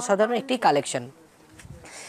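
A man speaking for about the first second, then a short quiet pause.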